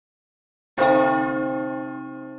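A single deep bell-like strike used as a logo sound effect: it rings out a little under a second in and fades over about two seconds before cutting off.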